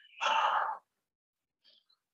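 A person sighs once, a short breathy exhale of about half a second, while thinking over an answer.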